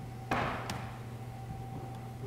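A single knock or thump that dies away quickly, followed by a lighter click, over a steady low electrical hum.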